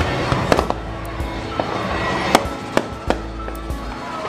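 Aerial fireworks going off: a string of sharp bangs and crackles, the loudest a little past halfway, over music playing throughout.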